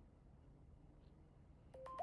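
Near silence, then near the end a short run of electronic beep tones at a few different pitches, stepping up from a lower beep to higher ones.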